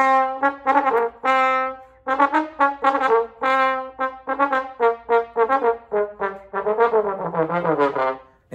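Jupiter JTB700 small-bore B♭ tenor trombone played solo in a jazz phrase: a held note, then a quick run of short tongued notes, ending in notes that waver and bend in pitch. The tone is bright and pointed.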